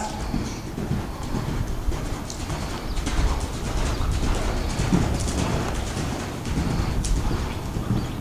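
Hoofbeats of a horse cantering on dirt arena footing, a run of dull repeated thuds.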